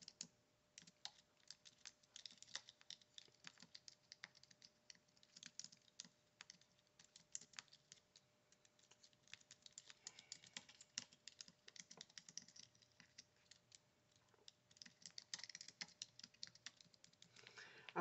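Faint typing on a computer keyboard: irregular runs of key clicks with short pauses between them.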